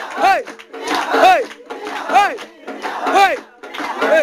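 Voices calling out together in a rising-and-falling shout about once a second, over steady held notes of backing music.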